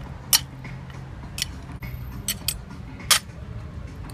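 A metal fork and knife clinking against a ceramic plate while food is mixed on it: about five sharp clinks spread across the few seconds.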